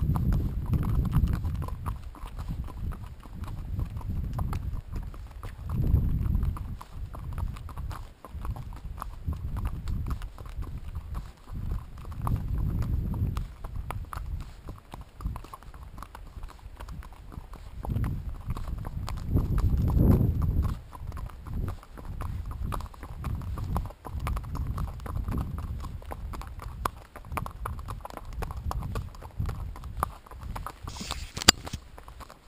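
Horse's hooves clip-clopping on a gravel track, heard close from the saddle, with repeated surges of low rumble.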